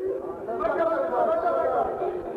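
A man reciting a Saraiki mourning lament (masaib) in a sung, drawn-out chant, holding long notes between phrases.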